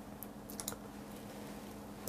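Faint typing on a computer keyboard: a few scattered key clicks, most of them in the first second, over a low steady hum.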